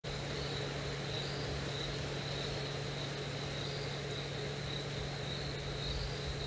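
Night insects trilling steadily on one high, unbroken note that swells slightly now and then, over a steady low hum.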